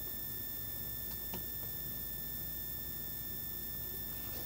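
Steady low background hum and hiss with a few thin, steady high whining tones; a couple of faint clicks about a second in.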